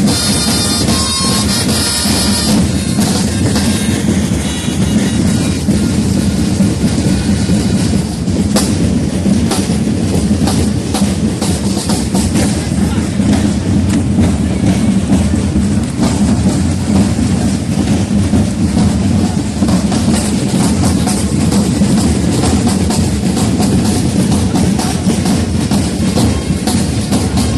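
A corps of marching drums played steadily and continuously in a dense rolling rhythm to accompany a flag-waving display. A held wind-instrument note sounds over the drums at the start and ends about two seconds in.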